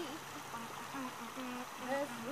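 A girl humming a made-up tune in a string of short, level held notes, over the steady rush of water running across the shore.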